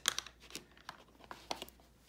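Paper being handled: a short crinkle at the start, then a few faint clicks and rustles.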